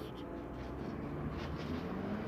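Quiet, steady outdoor background with a low rumble and no distinct bounces or knocks.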